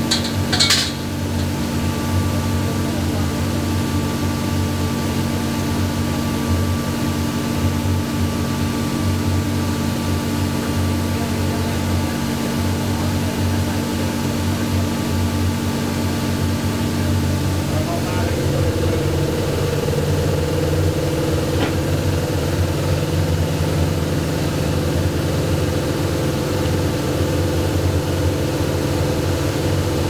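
Automated machining cell with a robotic loading arm running: a steady mechanical hum and drone with several held tones, a short clatter about a second in, and the hum changing pitch about eighteen seconds in.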